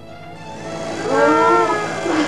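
A long, muffled, moan-like cry that rises and falls in pitch, the kind a gagged woman makes screaming through a gag, over a swelling hiss.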